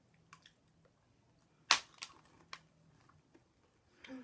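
Quiet chewing of mint M&M's: a few small crunches of the candy shell, with one sharper, louder crunch a little under halfway through.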